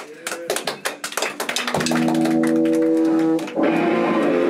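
Hand claps and a short voice, then about two seconds in an electric guitar strikes a chord and lets it ring, with a second chord struck near the end.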